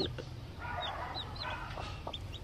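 Newly hatched chicks peeping: several short, high cheeps that each slide downward in pitch, with soft low clucking from the brooding hen beneath them.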